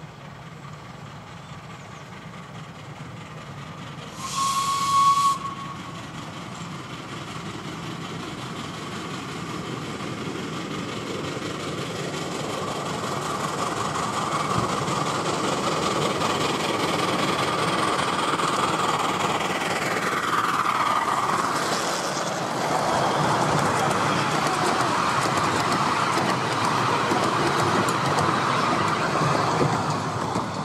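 4-8-4 miniature steam locomotive gives a short whistle about four seconds in, then draws nearer and passes hauling its coaches, its running noise swelling steadily and loudest as it goes by.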